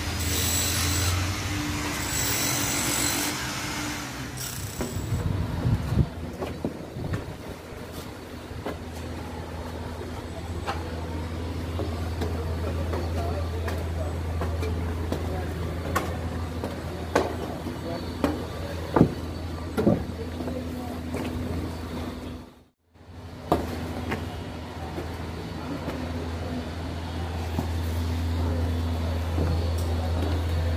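Steady low drone of a heavy construction-machinery engine running, with scattered sharp knocks and clanks. The drone breaks off briefly about two-thirds of the way through.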